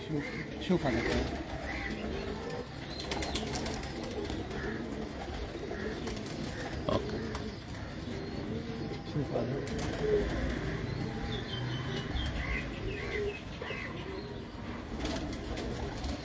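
Domestic pigeons cooing in the background, low repeated calls throughout.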